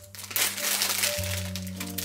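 Thin clear plastic bag crinkling as hands pull it open around a bagel, loudest in the first second, over background music with a steady low bass line.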